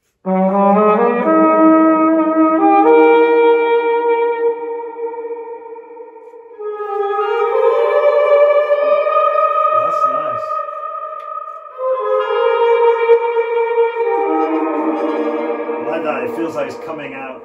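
A trumpet with a Yamaha Silent Brass mute mic, played through a guitar reverb pedal into a guitar amp and cabinet. It plays three sustained melodic phrases, the first starting low and stepping upward, and each phrase fades away in a smooth reverb tail.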